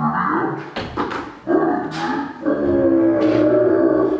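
Low, drawn-out voice-like sounds in about four long stretches, the longest near the end.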